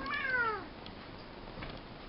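Domestic cat giving a single meow that rises and then falls in pitch, an annoyed call that the owner takes as the cat being mad at her.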